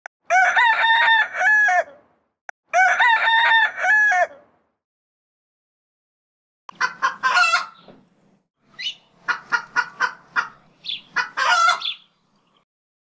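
A rooster crowing twice, the two crows alike and about a second and a half each, followed after a short pause by a run of short, quick chicken clucks.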